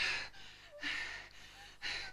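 A person breathing hard in three sharp, breathy gasps about a second apart, the middle one the longest.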